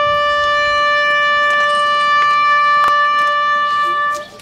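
A solo trumpet holds one long, steady note of a ceremonial call for the fallen. The note breaks off right at the end, a pause before the next phrase.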